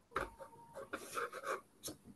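Stylus scratching on a writing tablet as a short equation is handwritten: a run of quick, irregular pen strokes with a light tap near the end.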